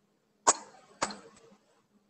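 Two sharp clicks about half a second apart, then a fainter one: fingers tapping and handling the phone that is recording, picked up close to its microphone.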